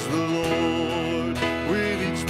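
A man singing a country-style praise song to acoustic guitar, holding long notes, with an upward slide in pitch near the end.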